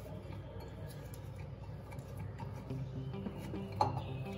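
Soft background music with light taps and clinks of hands kneading soft dough in a glass bowl, and one sharper knock near the end.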